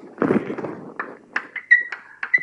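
A high-pitched whistling squeal held at one fixed pitch, cutting in and out from about three-quarters of the way in. It follows a short burst of noise and a few sharp taps.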